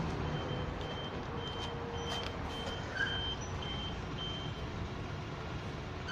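A vehicle's reversing alarm beeping steadily at a single high pitch, about two beeps a second, over a continuous low engine rumble.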